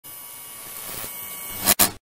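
Steady hiss with a faint hum, growing a little louder, then two loud sharp bursts close together near the end before it cuts off suddenly.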